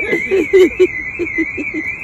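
A man laughing in a quick run of short bursts over a steady, high-pitched alarm tone that warbles up and down about four times a second.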